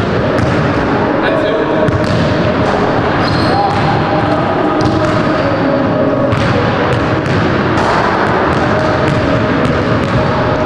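Basketballs bouncing on a hardwood gym court, irregular thuds under a continuous voice.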